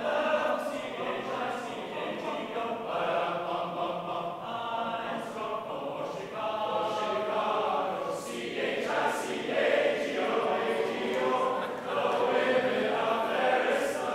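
A choir of young men singing a cappella, many voices together in a steady, continuing song.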